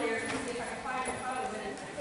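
Horses' hoofbeats on sand arena footing, with people's voices talking at the same time.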